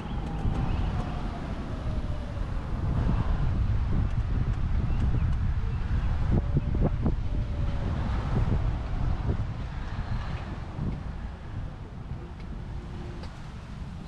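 Wind rumbling on the microphone as the scooter moves along a paved trail. A faint whine slides down in pitch near the start.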